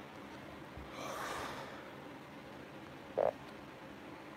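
A man's breath out about a second in, over a steady room hiss, then one short throat sound a little after three seconds.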